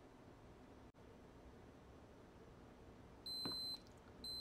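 Polaroid Cube action camera's power-on beep: after a few seconds of near silence, one steady high-pitched electronic tone of about half a second sounds near the end. It is the sign that the camera now powers up on its replacement lithium polymer battery.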